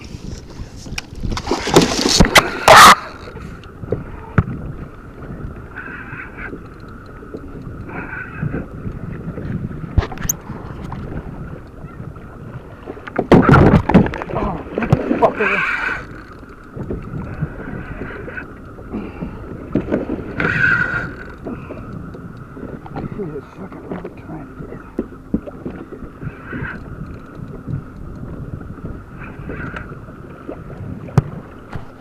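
Wind and choppy water around a fishing kayak, with two loud surges of noise, about two seconds in and again around fourteen seconds, over a faint steady high whine.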